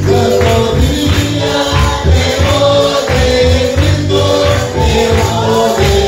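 Evangelical worship song: voices singing together over a steady beat of bass and percussion.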